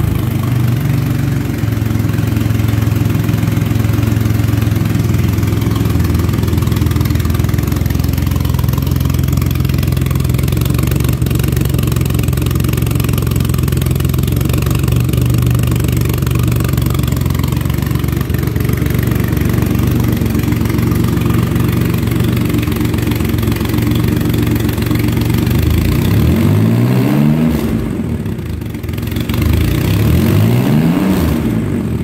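A 2005 Triumph Rocket III's 2.3-litre inline three-cylinder engine idling steadily just after a cold start, through an open-style muffler with only a light baffle. Near the end the engine is revved twice.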